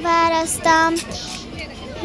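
A young girl singing. A long held note runs into a second, shorter note that ends about a second in, and the rest is quieter.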